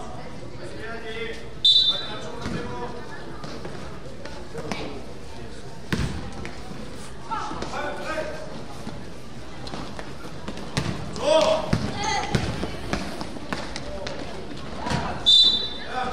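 Youth basketball game in an echoing gym: a referee's whistle blows in a short shrill blast about two seconds in and again near the end. In between, the ball bounces on the court floor and players and spectators shout.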